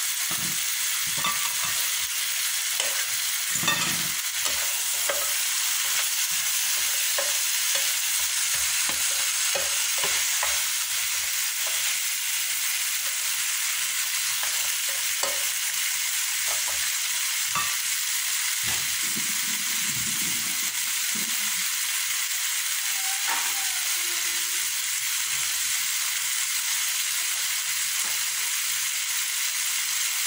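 Pork chops with onions and tomatoes sizzling steadily in an electric frying pan, with scattered clicks and scrapes of a fork and spatula turning and stirring them.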